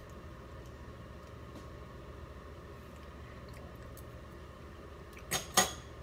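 Low steady room hum, then near the end two sharp clinks a fraction of a second apart: a metal fork against a stainless-steel saucepan.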